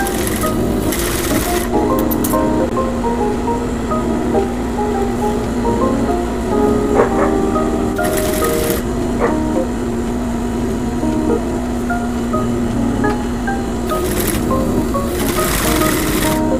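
Background music: a melody of short, stepping notes over a steady low tone, with three brief swells of hiss, one near the start, one about halfway and one near the end.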